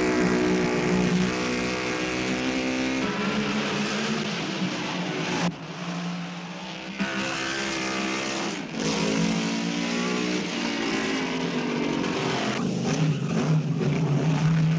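Lancia-Ferrari D50's V8 racing engine at speed, its note climbing under acceleration and dropping sharply several times as the driver changes gear or lifts off.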